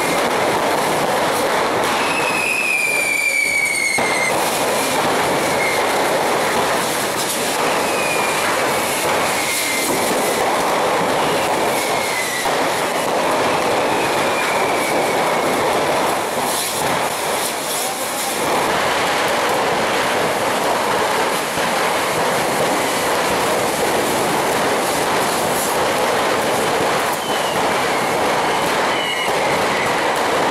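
Dozens of firework rockets shooting low along a street, a dense continuous hiss of burning propellant with several short falling whistles, the loudest about two to four seconds in.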